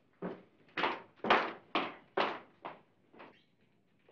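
A woman's footsteps, about two steps a second, seven in all, growing fainter near the end.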